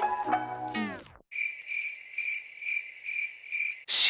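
A pop song slows and drops in pitch to a halt, like a tape stopping, about a second in; then a cricket chirps steadily, about three chirps a second, a comic 'awkward silence' sound effect laid over the edit.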